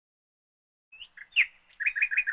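Birds chirping: a quick run of short, high chirps that starts about a second in, after a silent first second.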